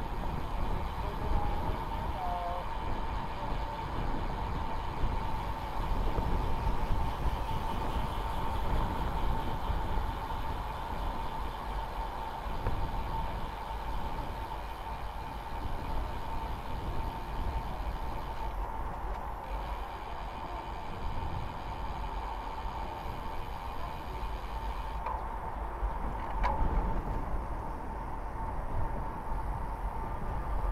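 Wind rumbling on the microphone and tyre and road noise from a road bike being ridden, with a thin steady high tone underneath.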